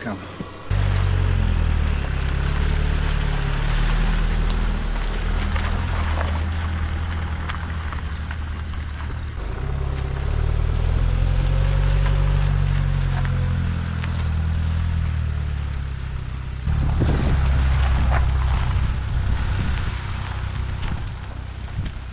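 Vans driving past on a rough track, recorded by a trail camera: a loud low engine hum that swells and fades as each vehicle goes by, with an abrupt change about seventeen seconds in where one clip cuts to the next.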